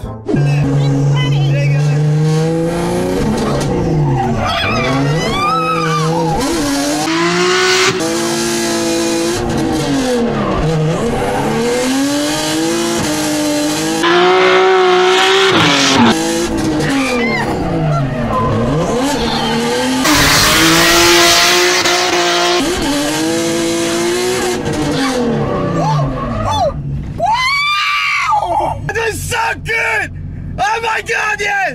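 Drift car's engine, its revs repeatedly climbing and dropping as the car slides through corners, with bursts of tyre squeal. Near the end, a woman passenger screams.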